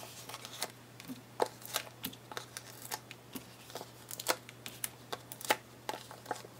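Stampin' Dimensionals foam adhesive dots being peeled one by one off their backing sheet and pressed onto cardstock: a run of irregular small clicks and light paper rustles.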